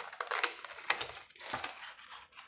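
Scissors cutting through thick cardboard: a few crisp snips about half a second apart.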